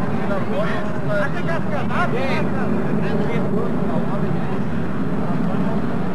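Indistinct chatter of several people talking at once, with no clear words, over a steady low rumble.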